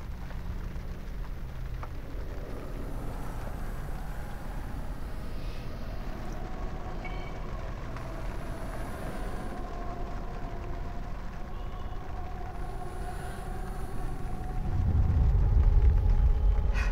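A low, ominous rumbling drone with faint held tones above it, swelling to a heavy rumble near the end: horror-film suspense sound design.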